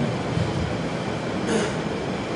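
Steady room noise: an even hiss with no distinct event.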